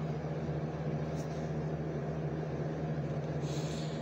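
Steady low mechanical hum of room machinery, with a soft rustle near the end.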